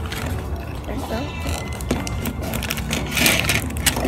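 Plastic candy-kit packets being handled and crinkled, a run of small irregular crackles and clicks.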